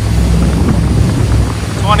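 Twin LS V8 inboard engines of a yacht running steadily under load at speed, a steady low drone under wind on the microphone and water rushing past the hull.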